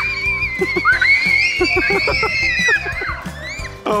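Children shrieking with excitement in long, high, wavering cries over background music.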